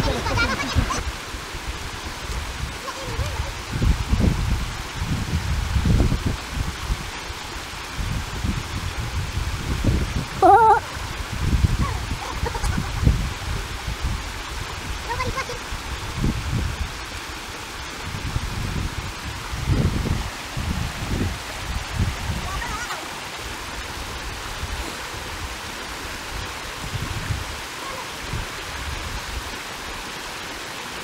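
Shallow, fast-flowing rocky river rushing steadily, with repeated low gusts of wind buffeting the microphone. A short vocal cry sounds about ten seconds in.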